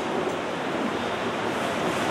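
Steady background hiss with no other event, heard in a pause between spoken sentences.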